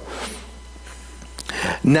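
A pause in a man's talk: a low steady hum, a single small click a little past halfway, then a short breath and the first word of speech near the end.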